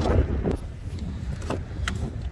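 Low wind rumble on the microphone, with two short clicks in the last half second.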